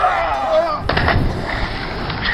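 A shout from one of the jumpers, then about a second in a heavy splash as bodies plunge into water off a rock ledge, the churning water carrying on.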